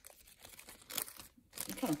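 Foil booster pack wrappers and cards crinkling and rustling in a hand, with irregular rustles, the sharpest about a second in. A voice starts talking near the end.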